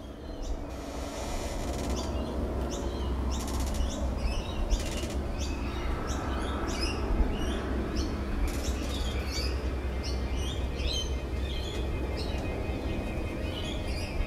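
Quiet ambient intro to an emo/hardcore album track, swelling up in the first couple of seconds: a low steady drone with many short bird-like chirps and a few washes of hiss over it, before the band comes in.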